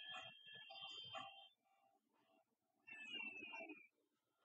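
Near silence, with two brief, faint, indistinct background sounds; the second one falls in pitch.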